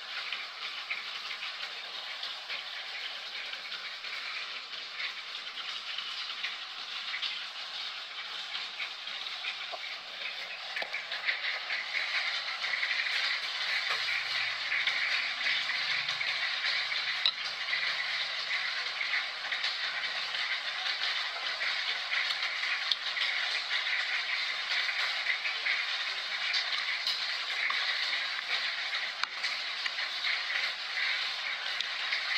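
Steady rain, an even hiss that grows louder about twelve seconds in.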